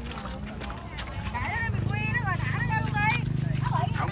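Several people talking in the background; a little before halfway a low, steady motor drone comes in underneath the voices and keeps going.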